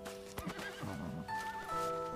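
A horse whinnies once, a quavering call that begins about half a second in and lasts under a second, over background music with held notes.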